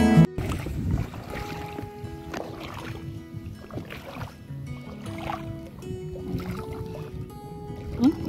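A loud guitar tune cuts off just after the start, giving way to soft background music over water sloshing and splashing as a person wades and gropes with their hands in shallow seawater.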